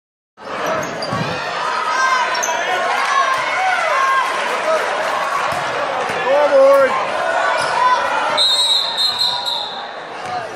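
Basketball game in a gym: the ball bouncing on the hardwood court and sneakers squeaking under crowd voices and shouts. Near the end a referee's whistle blows steadily for about a second and a half.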